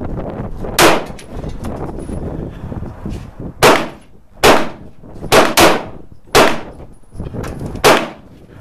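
Shots from a SAR9 METE 9mm semi-automatic pistol: about seven loud, sharp reports at an uneven pace, one early, then a run of shots with a quick pair in the middle and a last shot near the end.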